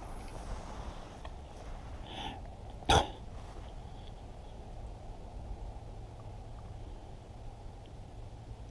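Quiet outdoor background with one short, sharp sound about three seconds in, just after a fainter one.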